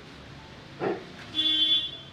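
A short vehicle horn toot, a single steady note about half a second long, about one and a half seconds in. A brief sound comes just before it, about a second in.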